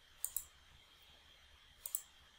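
Computer mouse clicks: two quick pairs of clicks, one just after the start and one near the end, as a font size is picked from a dropdown menu.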